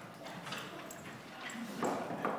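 A few irregular light knocks and scuffs, the loudest near the end.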